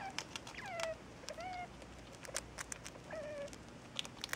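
Degus squeaking: three short pitched calls, the first falling, the second rising, the third fairly flat, among scattered sharp clicks.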